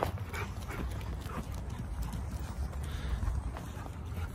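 Dogs playing on wood-chip ground: short, irregular scuffs and breaths, a few every second, over a steady low rumble.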